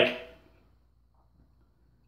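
Near silence: faint room tone in a pause between sentences, with the tail of a man's voice fading out at the start.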